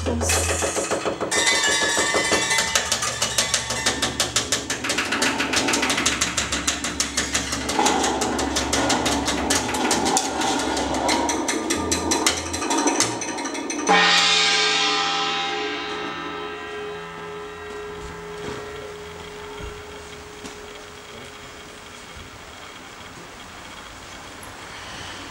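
Hammered dulcimer playing a fast tremolo of struck strings over double bass notes. About 14 s in it strikes one loud chord that rings on and slowly dies away.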